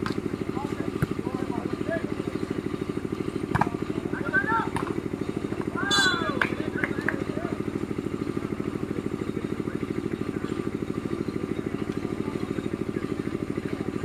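A steady engine drone with fast, even pulsing runs throughout. A sharp hit sounds about three and a half seconds in, and short shouts rise over the drone a little later.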